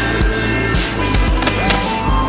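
Background music with a steady beat over a skateboard rolling on concrete, with two sharp clacks close together about a second and a half in.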